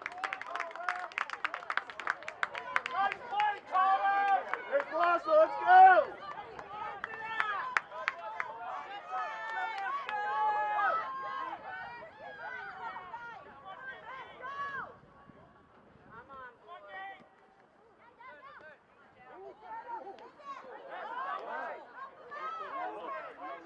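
Indistinct voices of players and spectators calling out and chattering across a soccer field, with clapping in the first few seconds. The voices drop lower for a few seconds past the middle, then pick up again near the end.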